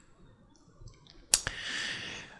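A single sharp computer-mouse click about a second and a half in, followed by a soft hiss.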